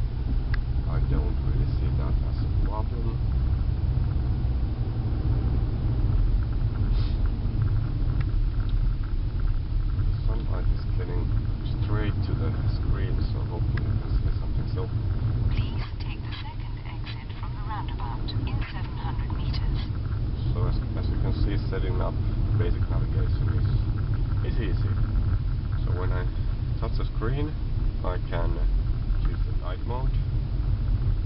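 Inside a moving car: a steady low rumble of engine and road noise, with faint voices heard at times through it.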